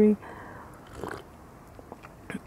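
A single soft sip of hot tea from a porcelain cup about a second in, a brief mouth sound over faint background noise, just after the tail of a spoken word.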